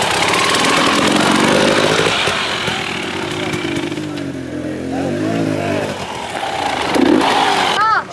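Enduro dirt bike engine running, its pitch rising and falling, with people's voices mixed in.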